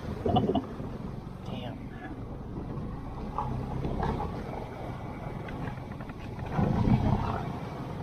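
Outboard motor of a Gheenoe running steadily under way, with water rushing past the hull; it grows louder for a moment about six and a half seconds in.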